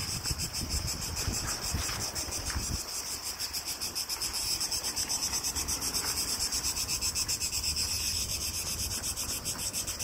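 Chorus of cicadas in the trees: a really loud, high-pitched buzz with a fast, even pulse that holds steady throughout.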